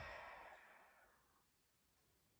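A man's long exhaled sigh, breathy and without voice, fading away over about a second and a half.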